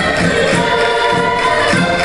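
Live Portuguese folk music for a chula dance: a group singing over accordions, with a steady beat.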